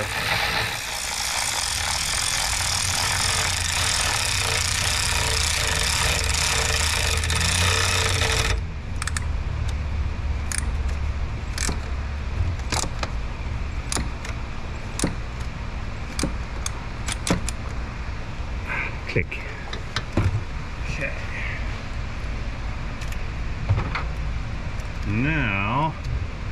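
Power ratchet running a spark plug in a 5.7 Hemi V8's cylinder head, a loud steady whir that stops suddenly about eight seconds in. After it comes a string of sharp clicks and clinks of the tool, socket and extension being handled.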